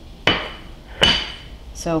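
Two sharp clinks of hard kitchenware about three-quarters of a second apart, the second louder, each leaving a brief metallic ring.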